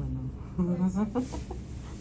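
A person laughing briefly, a few short laughs about half a second in.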